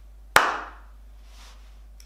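A single hand clap about a third of a second in, sharp, with a short ring from the room after it: one clap standing for the one syllable of the word 'pen'.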